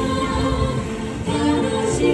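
The attraction's soundtrack: a choir singing sustained notes over music.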